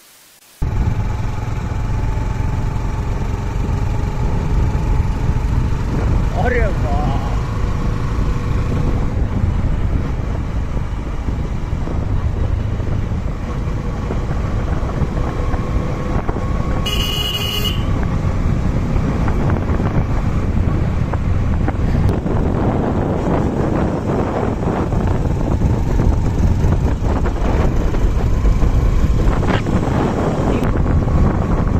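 Motorcycle riding along a road: engine and road noise under a heavy, steady rush of wind on the microphone, starting suddenly just under a second in. A brief high-pitched sound comes a little past halfway.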